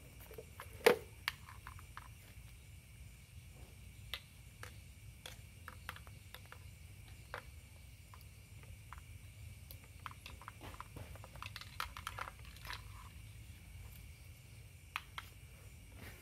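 Small clicks and knocks of a power plug being handled and pushed into a wall socket, with one sharp click about a second in and scattered lighter ticks after it. A low steady hum runs underneath.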